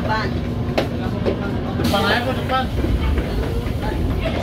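Cabin noise inside a Tokyo Metro 05 series electric commuter train moving slowly: a steady low rumble with a steady hum, under people's voices at the start and about two seconds in.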